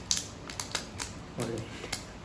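A few short, sharp clicks and taps as hands handle a new Samsung Galaxy A32 smartphone.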